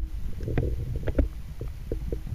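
Underwater sound: a continuous low rumble of moving water with about half a dozen sharp clicks and ticks scattered through it.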